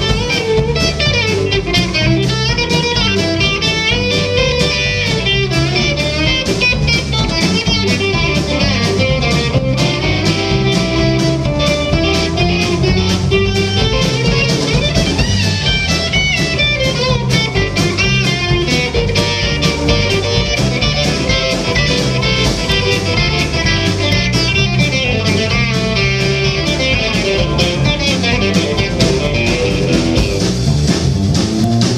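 Live country band playing an instrumental stretch with no vocals: electric guitar over strummed acoustic guitar, bass guitar and a steady drum beat.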